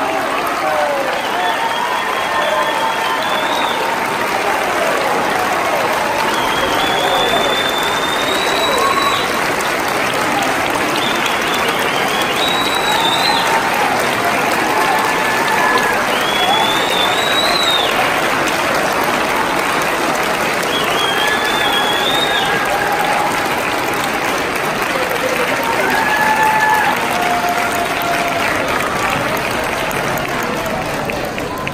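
Audience applauding steadily, with scattered voices calling out over the clapping.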